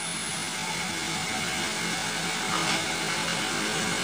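A steady whirring background hum with no distinct events.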